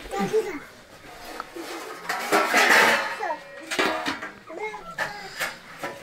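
Family voices talking, children's among them, loudest about halfway through, with a few sharp clinks of a metal ladle against a steel pot as food is served into steel plates.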